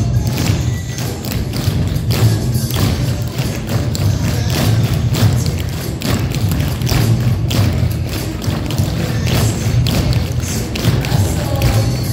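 A group of tap dancers' tap shoes striking a wooden floor, many quick taps and stamps throughout, over music with a heavy bass.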